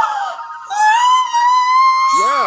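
A long, high-pitched held tone that slowly rises in pitch, starting after a short falling tone at the beginning.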